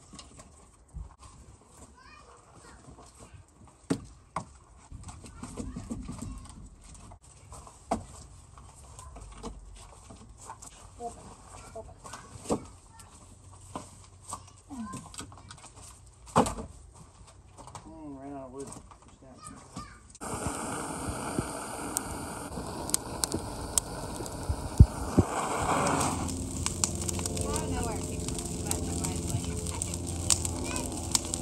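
Split firewood being stacked, the pieces knocking together in sharp clacks every few seconds. About two-thirds of the way through, this gives way to a brush pile burning: a steady rushing noise with many small crackles and pops.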